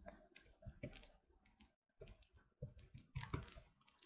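Faint, irregular keystrokes on a computer keyboard as a word is typed, with a short pause about halfway through.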